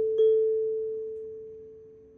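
Intro chime sound effect: a bell-like tone, struck again just after the start, rings at one steady pitch and fades slowly away.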